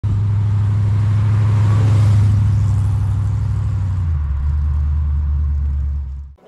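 Holden Torana LX's 355 Holden V8 running with a loud, low, pulsing exhaust rumble; its note drops lower about two-thirds of the way in.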